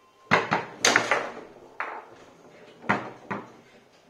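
Foosball in play: the hard ball struck by the plastic players and knocking against the table. A quick run of sharp clacks in the first second, then a few separate knocks later.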